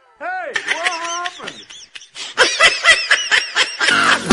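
High-pitched voice giggling and laughing: a few sliding, wavering notes in the first second or so, then a fast run of laughs from about halfway through.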